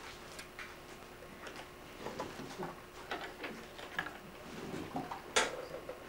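Quiet room with scattered faint clicks and taps from a watercolour brush being worked on paper and at the paint palette, with one sharper click near the end.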